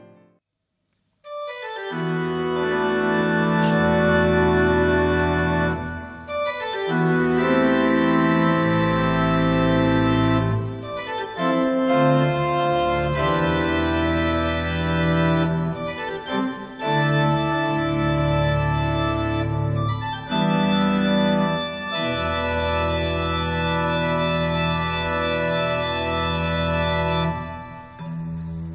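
Electronic keyboard playing slow, sustained organ chords that start about a second in and change every one to three seconds, ending just before the close.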